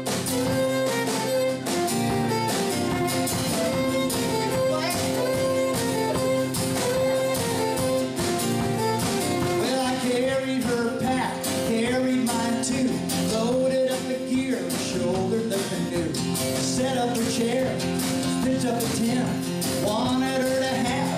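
Live acoustic country band playing: a bowed fiddle carries the tune over a strummed acoustic guitar, with a steady beat.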